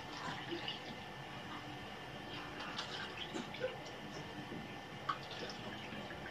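Milk being poured from a bowl into small plastic cups: a faint trickle with scattered light drips and taps.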